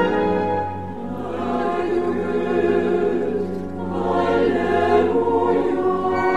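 Mixed opera chorus singing in sustained full-voiced phrases. The sound dips briefly about a second in and again just before four seconds, then swells back.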